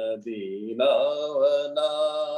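A voice chanting in long, held notes, with the pitch sliding slowly between notes and growing louder about a second in; it comes through video-call audio.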